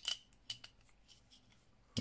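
Plastic parts of a Transformers Siege Impactor action figure clicking as they are folded into place by hand: a few light clicks, most of them in the first second.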